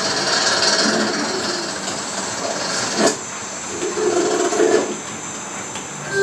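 Cartoon sound effects of the Big Idea logo animation, heard through a television: steady swishing and hiss as the letters flip around, a sharp click about three seconds in, and a louder flurry of sound around the fourth to fifth second.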